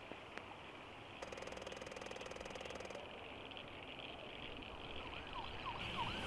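Faint steady background hiss, with a buzz lasting about two seconds early on. Near the end, emergency-vehicle sirens come in, wailing up and down and growing louder.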